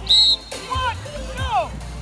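A short, sharp whistle blast at the start, the loudest sound, then two shouted calls as a youth football play is run, over background music.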